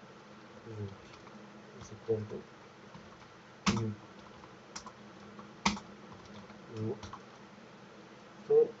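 Computer keyboard typing: scattered key clicks, two louder ones in the middle.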